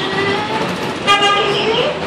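A short horn toot, one flat pitch lasting about half a second, starts suddenly about a second in over a background murmur of voices.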